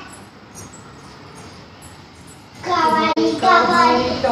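Low room noise, then a child's voice singing about two and a half seconds in, cut by one brief sharp click.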